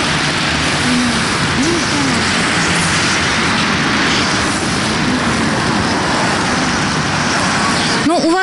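Steady hiss of rain and wet road traffic on a city street, with a voice faintly audible beneath it.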